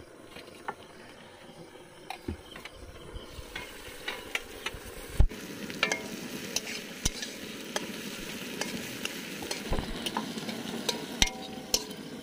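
Chopped red onions frying in hot oil in an aluminium wok, the sizzle growing louder about three seconds in, while a metal spatula stirs them with repeated scraping clicks against the pan.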